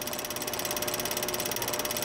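Mechanical clicking from a logo outro sound effect: a fast, even clatter of clicks with a steady thin tone underneath.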